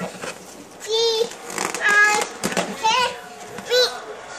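A toddler's high-pitched vocalizing: four short babbled calls about a second apart, each bending up and down in pitch.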